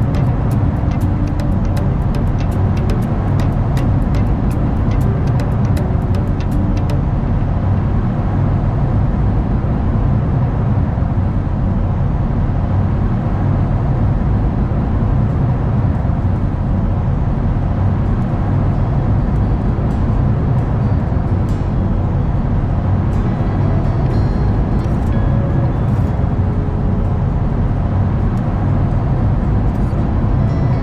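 Steady road and tyre noise heard inside a car cruising at highway speed, a constant low drone. Background music plays faintly under it.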